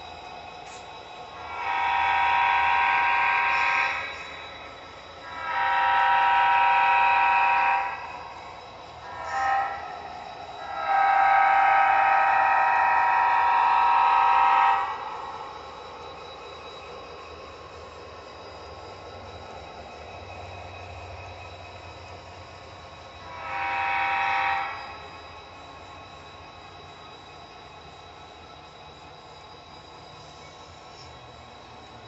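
Sound-equipped model Rock Island diesel locomotive blowing its horn in the grade-crossing signal: long, long, short, long. One more blast follows about ten seconds later, over the locomotive's steady lower running sound.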